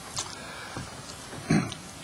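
A man's short intake of breath close to a microphone about one and a half seconds in, over low room tone, during a pause in his speech.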